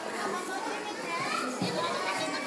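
Young children's voices, calling out and chattering over one another, with adults talking among them.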